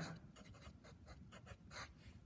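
Faint, short strokes of a felt-tip Sharpie marker writing on a white board.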